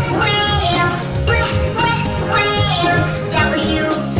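Children's phonics song: a child's voice singing over backing music.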